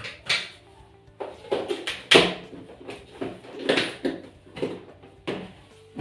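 A plastic food container and its snap-on lid being handled on a stone countertop: a string of short clicks and knocks, about ten in all, as a lid is fitted and pressed shut over packed fish. Background music plays underneath.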